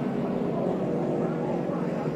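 A pack of NASCAR stock cars' V8 engines running together: a steady drone of several overlapping engine notes that drift gently up and down in pitch.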